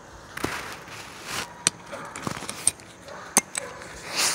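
Nylon pack fabric rustling with several sharp plastic clicks from its buckles and hardware, as the loaded ILBE backpack is handled.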